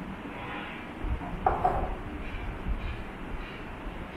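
Water pouring from a glass into a plastic bottle, with a few low bumps of handling and a brief brighter splash about a second and a half in, over steady room noise.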